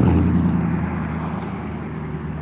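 A motor vehicle engine running with a steady low hum that slowly fades, with two short high bird chirps over it.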